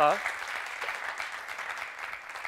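Studio audience applauding, a dense patter of claps that slowly dies away, after a man's voice breaks off with a falling cry at the very start.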